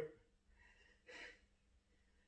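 Near silence broken about a second in by one short, faint breath from a man straining to hold a crunch.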